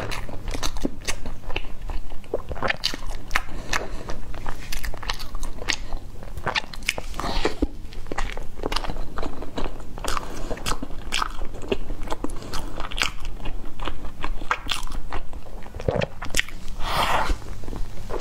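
Close-miked eating of a filled baked bun: biting and chewing with many sharp, wet mouth clicks and smacks.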